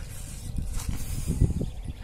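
Rustling and handling noise with an uneven low rumble, and a brief hiss in the first second.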